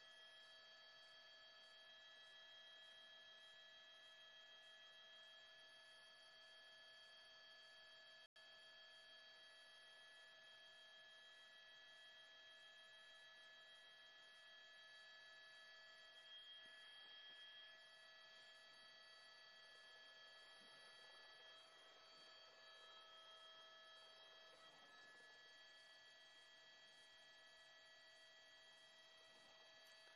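Near silence: faint, steady electronic tones of several fixed pitches held throughout, with one brief dropout about eight seconds in.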